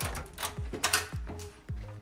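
An aluminium-framed sliding glass entrance door rattling along its track, with several sharp clicks and knocks from the frame and rollers, under soft background music.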